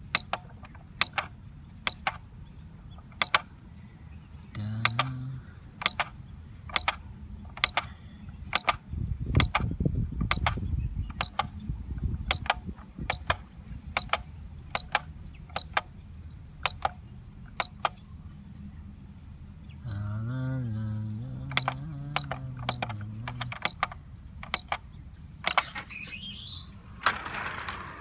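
Electronic keypad beeps from a Centurion Vantage gate motor control board, one short high beep for each button press, about once a second and sometimes in quick pairs.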